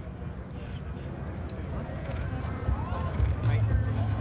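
Indistinct voices over a low steady hum, with no clear words, in the open air at an airshow.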